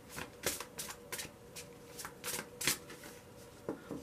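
A deck of tarot cards shuffled by hand: a run of short, irregular card strokes, a few a second, that stops shortly before the end as a card is drawn.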